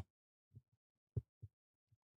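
Near silence with four short, faint low thumps spread over the two seconds, the second the strongest.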